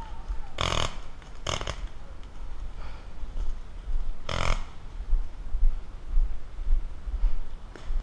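Three short, sharp paintball marker shots: two about a second apart, then one more a few seconds later, over a steady low rumble on the microphone.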